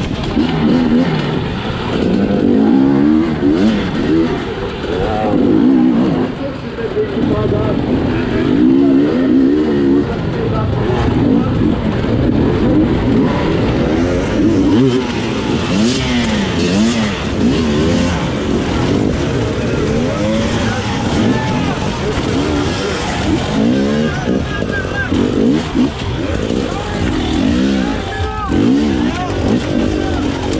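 Two-stroke hard-enduro motorcycle engine revving up and falling away again and again in quick throttle bursts while picking through rocks and logs, heard close up from the bike's onboard camera.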